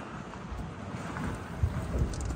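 Wind rumbling on the phone microphone, with a soft thump about one and a half seconds in.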